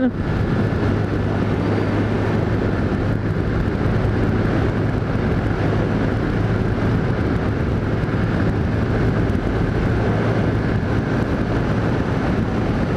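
Honda CG Titan's single-cylinder four-stroke engine running steadily at cruising speed, heard from a helmet camera with wind and road noise over it.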